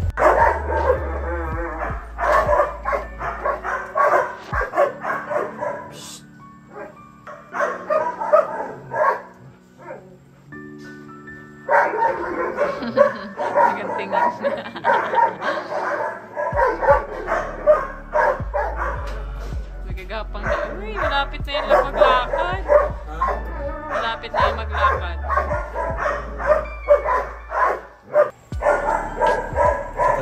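Newborn puppies squealing and whimpering while they nurse, over background music.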